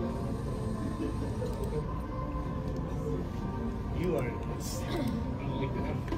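College marching band playing in an open stadium, heard from the stands, with spectators' voices over it; a voice stands out about four seconds in.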